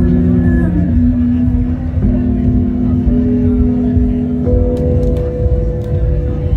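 Instrumental passage of a live song on a Yamaha electric keyboard: held notes that step to new pitches about every second over a thick low end.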